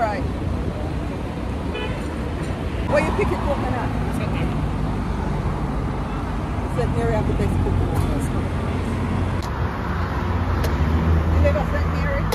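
A motor vehicle engine running close by as a low steady hum, with brief snatches of voices.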